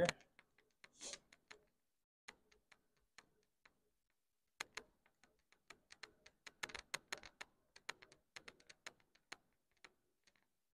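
Faint, irregular metallic clicks and ticks from the crank of a Bridgeport milling machine's knee as it is wound up, a few at first and then a quicker run of them through the second half.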